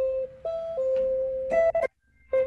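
Clean electric guitar played fingerstyle, single notes: a higher note pulled off to one about a third lower, twice, the lower note held for about half a second the second time, then a quick flurry of notes that stops shortly before the end.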